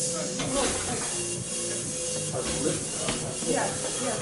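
Steady hiss and hum of room noise, with a faint voice and music underneath.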